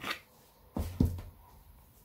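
A metal spoon knocking and scraping against a mixing bowl as thick cake batter is scraped out into a baking tin. There are three short knocks: one at the start, then two louder, duller ones close together about a second in.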